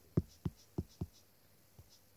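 A stylus tapping on a tablet's glass screen: four quick taps about a third of a second apart, then a pause and one faint tap near the end, as the pen marks are erased.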